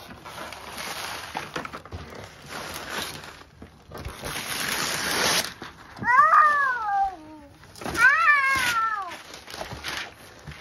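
Wrapping paper being torn and rustled off a large gift box for the first half, then two long high cries about two seconds apart, each sliding down in pitch.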